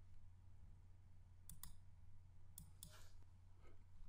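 Near silence with a low steady hum, broken by a few faint, scattered computer mouse clicks.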